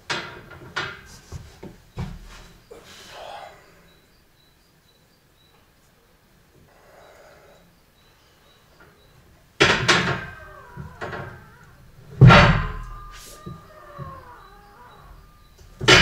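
Loaded barbell-plate lever exercise machine thudding and clanking under about 190 kg: a few light knocks, then after a quiet spell two heavy thumps, the second with a metallic ring that dies away over a few seconds, as the load is dropped back. A loud strained breath comes at the very end.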